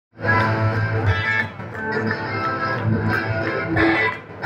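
Rock band playing live: driving electric guitars over bass guitar and drums, with a brief drop in the riff about a second and a half in.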